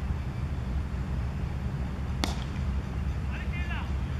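A single sharp crack of a cricket bat striking the ball, about two seconds in, over a steady low background rumble.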